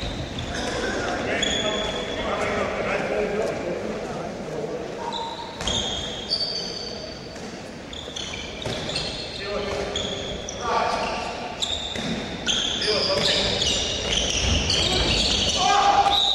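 Handball game sounds in a sports hall: the ball bouncing on the wooden court, many short high squeaks of players' shoes on the floor, and players' voices calling out, all echoing in the hall.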